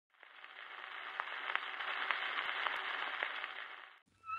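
Surface noise of a shellac 78 rpm gramophone record being played: a steady hiss with sharp clicks about every half second. It fades in over the first second and fades out near the end.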